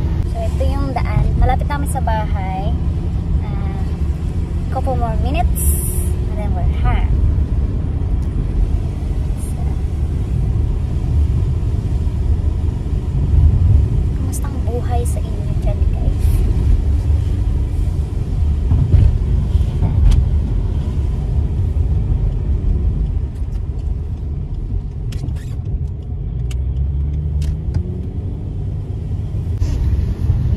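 Road noise and engine rumble inside a moving car's cabin, a steady low rumble throughout. A voice is heard briefly a few times.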